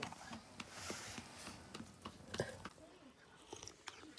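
Faint, scattered clicks and small knocks of eating from steel plates, with quiet chewing.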